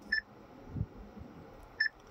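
Chery Tiggo 5X infotainment touchscreen giving a short electronic beep as a menu item is tapped. There are two beeps, one just after the start and one near the end, about a second and a half apart.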